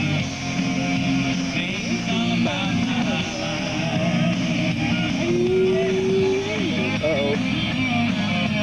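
A group of young singers performing a song over rock-style accompaniment with guitar; one long held note a little past halfway.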